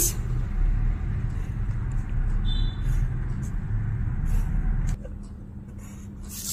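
Pencil strokes scratching on paper along a plastic ruler as short lines are drawn, faint against a low background rumble that drops away about five seconds in.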